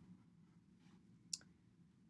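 A pen writing faintly on paper in near silence, with one sharp click a little past halfway.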